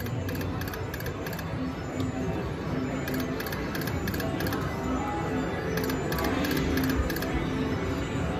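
Electronic video slot machine playing its spin music and sound effects while its reels spin.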